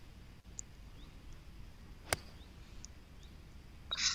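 A golf ball struck cleanly with a 7-iron: one sharp click about two seconds in, over faint background hiss.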